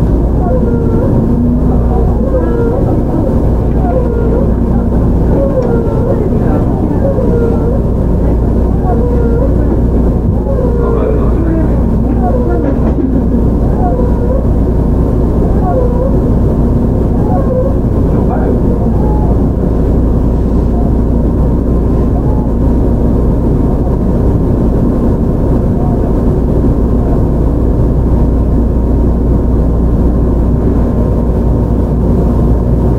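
Onboard running sound of a JR Shikoku 7000 series electric train at a steady speed: a continuous rumble of wheels on rail with a steady hum. Voices can be heard over it through roughly the first half.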